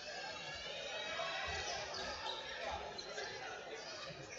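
Indoor football being played on a sports-hall floor: knocks of the ball and squeaks of shoes against the murmur of spectators' voices in the hall.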